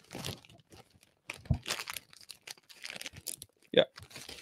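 Paper rustling and crinkling in short, irregular scrapes as a watercolour painting on paper is handled and brought out. A single spoken "yeah" comes near the end.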